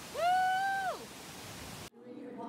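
A person whoops a high-pitched "woo!" that rises and falls in pitch and lasts under a second, over a steady rush of river water. The sound cuts off abruptly near the end.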